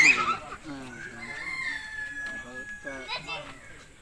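A rooster crowing once in the background: one long drawn-out call that sags slightly in pitch toward its end.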